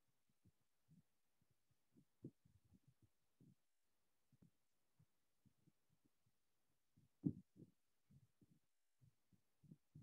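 Faint, irregular low thuds and rubs of a duster wiping across a whiteboard, a few strokes a second, the loudest about seven seconds in.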